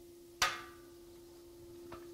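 A single sharp metallic clack about half a second in, with a brief ring: two air-track gliders snapping together on their attracting magnetic bumpers. Under it the air track's blower hums steadily at one pitch.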